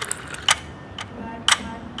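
Sharp, clock-like ticks, two a second, evenly spaced, in a break where the backing track's bass and vocals drop out.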